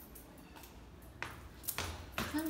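Footsteps on stairwell stairs: a few sharp footfalls in the second half, after a quiet start.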